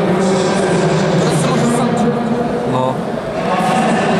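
Indistinct talking by people in a sports hall, running on without clear words.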